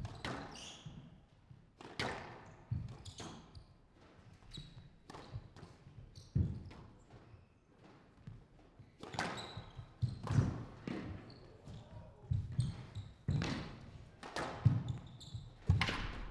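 Squash rally: the ball is struck by rackets and rebounds off the walls and glass of the court. It makes a string of sharp, irregular knocks, some echoing briefly in the hall.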